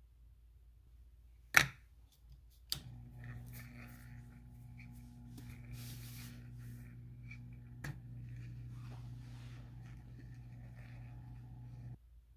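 A small electric motor starts with a click a few seconds in and then runs with a steady low hum. Sharp clicks and light handling noises sound over it, the loudest a single sharp click just before the motor starts.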